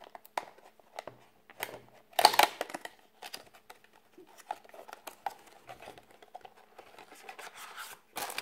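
A clear plastic packaging sleeve sliding and scraping off a small cardboard box: scratchy rustling and crinkling with scattered clicks, loudest about two seconds in.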